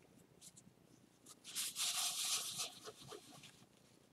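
A paper tissue rustles as it is rubbed over gloved fingers to wipe them clean. The burst lasts about two seconds and has a few short squeaks in it.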